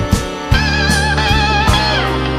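Slow blues-rock instrumental: an electric lead guitar holds wavering, vibrato-laden notes over sustained bass notes and drums, with a drum hit near the start and another about half a second in.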